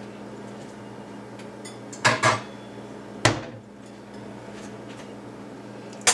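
Cookware handled out of view: a short clatter about two seconds in and a single sharper knock just after three seconds, over a steady low hum.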